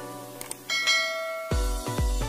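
Two quick clicks, then a bright bell-like ding, the notification-bell chime of a subscribe animation, rings for under a second over plucked background music. About one and a half seconds in, electronic dance music with a heavy bass beat starts.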